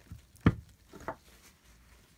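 A sharp click about half a second in, then two faint clicks: small hard knocks from handling the brass valve piston assembly as it is set into the bore of a refrigerant gauge manifold.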